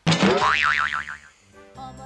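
Cartoon-style comedic sound effect added in editing: a sudden onset followed by a wobbling, wavering boing tone that fades out over about a second. Light background music starts near the end.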